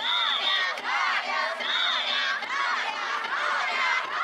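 A large team of danjiri pullers shouting together in rhythmic calls as they walk the rope, with two short, shrill whistle blasts cutting through, one at the start and one about two seconds in.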